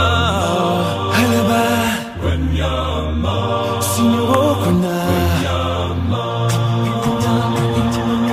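Background music: a song with a sung vocal line over held bass notes that change every second or two.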